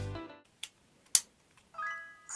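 Small plastic clicks from a toy robot's AAA battery compartment as the batteries and cover are fitted: a faint click about half a second in and one sharp snap about a second in. Background music fades out at the start, and an electronic tone starts near the end.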